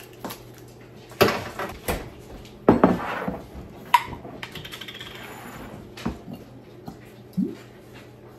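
Glass gravy jars knocked and set down on a countertop and a jar lid twisted off: a few separate knocks and clicks, one with a short ring about four seconds in, then a brief scraping hiss.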